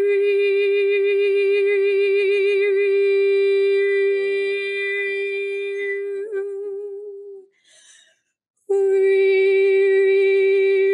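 A woman's voice toning for frequency healing: one long, steady sung note with a slight waver and strong overtones. It fades over a few seconds, breaks off about seven and a half seconds in, and resumes on the same note about a second later.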